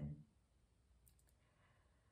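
Near silence: room tone, with a few faint clicks a little past the middle.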